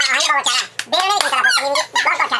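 A girl laughing hard in high-pitched, squealing bursts, with a man's voice alongside.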